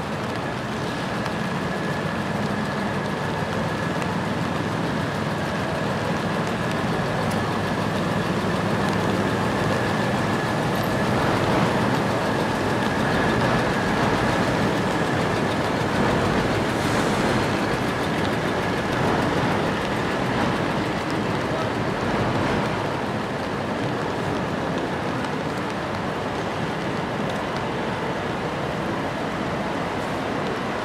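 City traffic on a wet street: a steady wash of vehicle and road noise that swells in the middle as a bus goes by. A faint steady high whine runs through much of it, with people's voices in the background.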